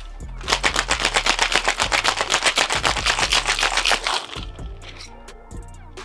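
Ice cubes rattling hard inside a cocktail shaker, shaken fast at about six strokes a second to chill and dilute the drink; the shaking stops about four seconds in.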